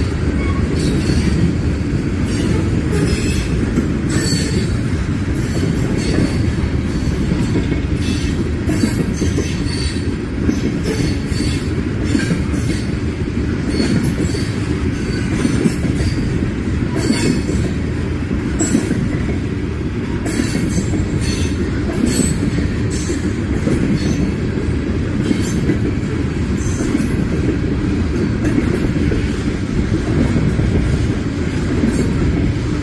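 Freight train cars rolling past a grade crossing: a steady heavy rumble with a continuous irregular clatter and clicking of steel wheels on the rails.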